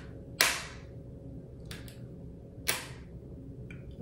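Zepbound single-dose autoinjector pen held against the belly clicking twice, two sharp clicks a little over two seconds apart. The first click marks the start of the injection and the second that the dose is complete.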